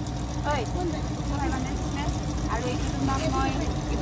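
Indistinct voices of several people talking in a crowded market shop, over a steady low hum and background rumble.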